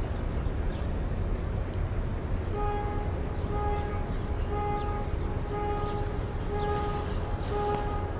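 Steady low background rumble, and from about two and a half seconds in a pitched beep repeating about once a second, each beep about half a second long.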